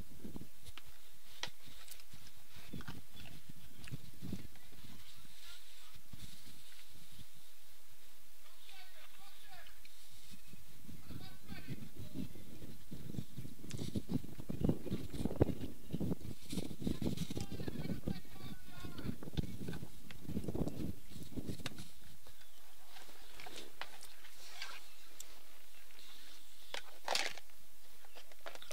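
Distant voices of cricket players calling out on the field, loudest through the middle of the stretch, over a steady outdoor background hiss.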